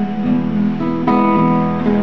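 Acoustic guitar strumming a loncomeo accompaniment, with a new chord struck about a quarter second in and another about a second in, each left ringing.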